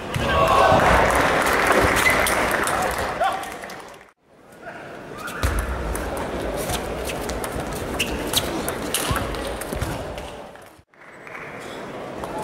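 Table tennis ball ticking sharply off the bats and the table during a rally, the hits coming in quick, uneven succession over a background of voices in a large hall. The first few seconds are a loud wash of crowd voices before the ball sounds begin.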